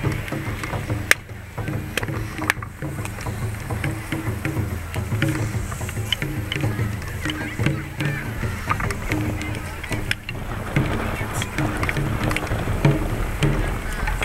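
Large bonfire crackling and popping, with one sharp crack about a second in, over the continuous voices of a crowd around it.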